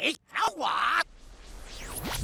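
A distorted cartoon character's voice making a drawn-out vocal sound for about the first second. It cuts off, then a quieter noise swells and a sweeping whoosh rises near the end.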